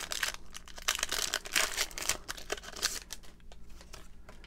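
Foil wrapper of a Pokémon Shining Fates booster pack crinkling and tearing as it is peeled open by hand, in quick irregular crackles that thin out near the end.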